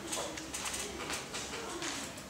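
Sheets of paper rustling in short bursts as they are handled on a desk, with a low wavering call-like tone underneath.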